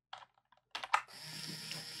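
A few computer keyboard key clicks (the Control R keystroke that runs the code), then about a second in a small yellow plastic DC gear motor starts and runs steadily with a quiet whirr.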